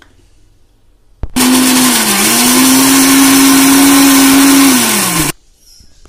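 Electric mixer grinder running with its steel jar, grinding chilli and spices into a wet masala paste. A click as it is switched on, then about four seconds of loud motor noise with a steady hum that dips briefly once under the load, and falls in pitch as the motor winds down.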